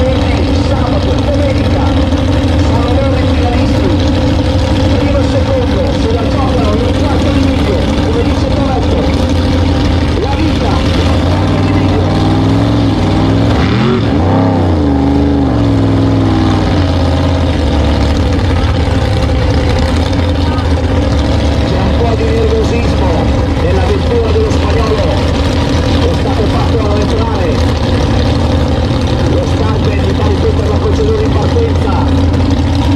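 Drag-racing cars' engines running at the starting line, a loud steady rumble. Around the middle the engine pitch rises and falls once.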